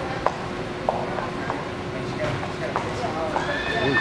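Horse cantering on soft arena dirt, its hoofbeats thudding about every half-second to second. Near the end a high, steady tone comes in and holds.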